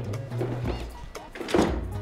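A single hollow plastic thunk about one and a half seconds in, as the red plastic tabletop of a toy play table is seated onto its plastic base, over steady background music.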